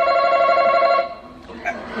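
Family Feud face-off podium buzzer sounding once: a steady, slightly warbling electronic tone that cuts off about a second in, marking a contestant buzzing in to answer.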